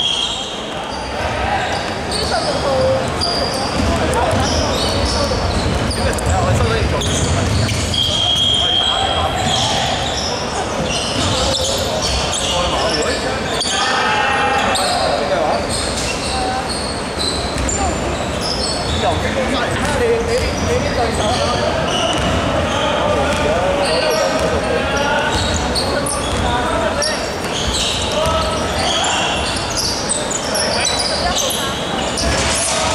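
Basketball bouncing on a hardwood court, with indistinct voices echoing in a large sports hall. A long steady referee's whistle blast sounds about 8 seconds in.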